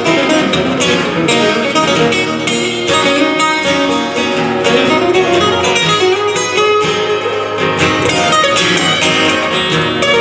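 Two acoustic guitars strummed together, playing a song live with steady chords.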